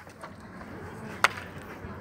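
Faint open-air background with one sharp knock a little past a second in.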